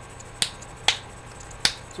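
Three sharp, loud clicks spaced about half a second apart.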